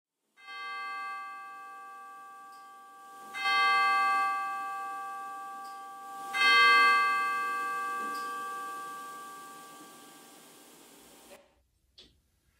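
A bell struck three times, about three seconds apart, on the same pitch. The second and third strokes are louder than the first, and each rings on and fades slowly. The last ring is cut off near the end.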